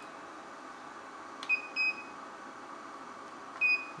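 iCharger 3010B LiPo chargers beeping as their buttons are pressed to start a charge: three short high beeps, two close together about a second and a half in and one near the end, the first after a faint click. Under them runs a steady hiss from the power supply's cooling fans.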